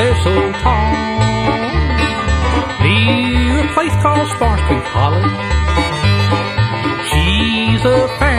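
Bluegrass band playing an instrumental passage: banjo, fiddle, mandolin and guitar over a bass line that keeps a steady alternating beat, with the lead sliding between notes.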